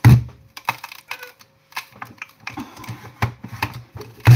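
Hand-lever potato chip cutter being forced down on a potato: a loud knock at the start, then irregular clicks and crunches as the potato is pushed through the blade grid. It is hard to push.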